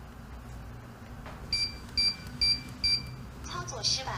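Keypad smart door lock sounding four short electronic beeps about half a second apart, its error alert after a failed unlock, then its recorded voice starting to announce 'operation failed' near the end.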